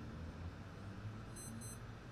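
Two quick high-pitched electronic beeps about a second and a half in, over a faint low steady hum.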